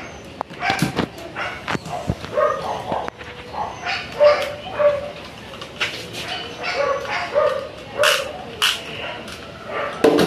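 Plastic clicks and rattles of a toy Beyblade launcher being handled and loaded, with a dog barking in short calls at intervals through the second half.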